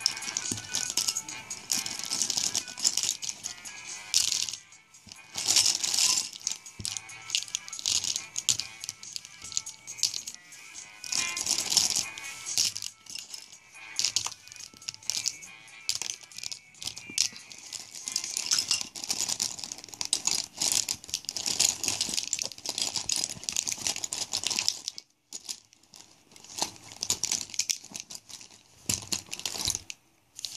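Plastic Sharpie markers clattering and rattling against one another as they are handled and shuffled: many quick clicks and rattles, with short lulls, one near the end.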